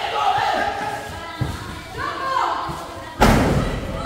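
A ball struck hard: one loud thud about three seconds in, echoing briefly under the court's metal roof, over players' shouts and chatter.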